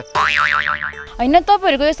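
Comic 'boing' sound effect: a springy tone that wobbles up and down for just under a second, then gives way to a voice speaking.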